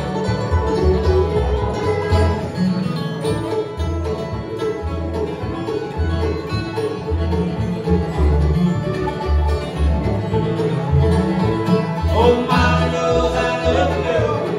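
Live acoustic bluegrass band playing an instrumental break: banjo, guitar, fiddle and dobro over an upright bass keeping a steady beat. Near the end a voice comes in singing.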